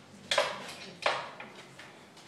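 Two sharp metal clanks, the second about three-quarters of a second after the first, each ringing briefly: steel foundry tools knocking against metal during a bronze pour.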